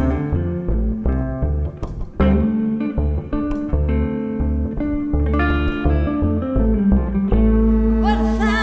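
Instrumental break in a live band: a hollow-body electric guitar plays picked single notes over plucked upright bass notes.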